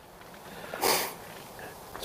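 A person sniffing once, a short sharp noise about a second in, over a faint steady outdoor hiss.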